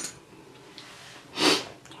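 One short, loud burst of breath through the nose, about one and a half seconds in, from a woman with a head cold.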